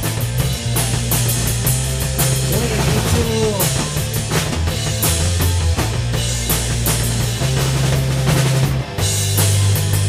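Rock band playing an instrumental passage on drum kit, electric guitar and electric bass, with steady drum hits over a prominent bass line. A short gliding note comes about three seconds in, and the band drops out for a split second near the end.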